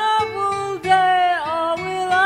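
A woman singing slow, held notes that glide in pitch, accompanied by acoustic guitar.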